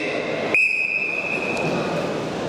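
A referee's whistle blown in one long, loud blast that starts about half a second in, most likely signalling the start of the freestyle wrestling bout. Arena crowd noise runs underneath.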